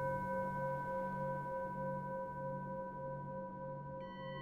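A chakra meditation tone, like a singing bowl, ringing steadily at several pitches and slowly fading. Under it, a low hum pulses a little under twice a second.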